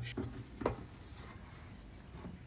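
Faint handling knocks of a Gourmia air fryer drawer being slid back into the unit, with one light knock a little over half a second in.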